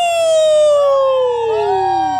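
A man's long, high yell, held and sliding slowly down in pitch, with a second yell joining in over it about one and a half seconds in.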